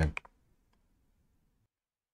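The tail of a spoken word, then near silence with a faint click, dropping to dead silence about two-thirds of the way through.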